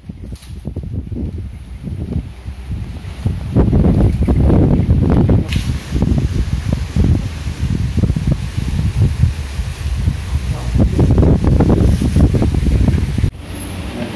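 Wind buffeting the microphone in loud, uneven gusts.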